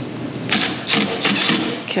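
Milwaukee M12 cordless impact driver running in a short rattling burst of about a second, beginning about half a second in, as the screw holding a relay is driven tight into thick metal.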